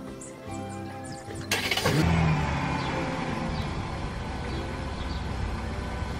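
A car engine being jump-started from another vehicle because it will not run on its own: after a short burst about one and a half seconds in, it catches and runs steadily. Background music is heard before it starts.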